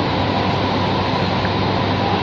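Steady, even rushing noise with a faint low hum: the dining room's ceiling air conditioning.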